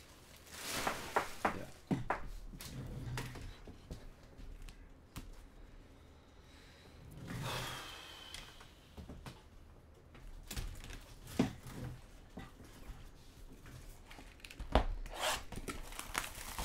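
Cardboard trading-card hobby boxes handled on a tabletop: scattered light knocks, rubs and a brief sliding scrape, with a sharper knock near the end as a box is pulled forward.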